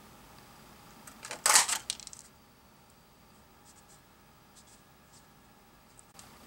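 Hexagon craft punch pressed through cardstock: a short cluster of sharp snaps and clicks about a second and a half in as it cuts out a hexagon, followed by a few faint clicks.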